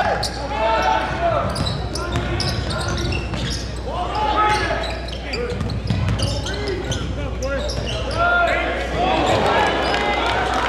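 Game sound on an indoor hardwood basketball court: a basketball being dribbled in sharp repeated bounces, with sneakers squeaking and indistinct voices of players and spectators in the echoing gym.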